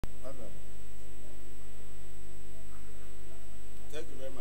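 Steady electrical mains hum with a stack of even overtones, holding at one level throughout. A man's voice is faintly heard briefly near the start, and speech begins just before the end.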